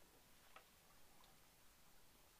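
Near silence: room tone with a few faint, short ticks from decal paper sheets being handled and set down on a cutting mat.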